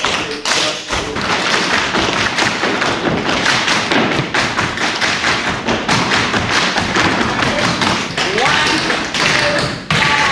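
Tap shoes of a whole class striking the studio floor together: a dense, fast run of taps and heavier stamps.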